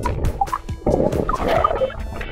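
Water churning and bubbling around an underwater camera as an otter swims close past it, with short bubbly blips and clicks, under faint background music.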